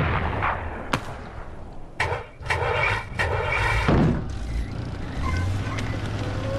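Gunfire and explosions: sharp cracks about one and two seconds in, then a cluster of noisy blasts over the next two seconds, all over a steady low rumble.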